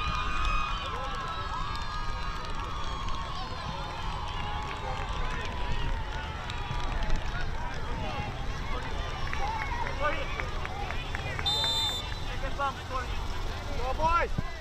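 Voices of spectators and players calling across a soccer field. About three-quarters of the way through, a short high referee's whistle blast signals the kickoff restart.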